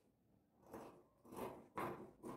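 Dressmaking scissors cutting through wax-print cotton fabric: three short crisp snips in the second half, in an even cutting rhythm of about two snips a second.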